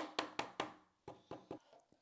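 A run of light taps and clicks from small objects being handled on a tabletop, about four quick ones in the first half second, then sparser and fainter ones.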